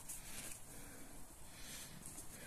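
Faint, quiet handling noise of a gauze bandage being unrolled and wound round a cat's paw.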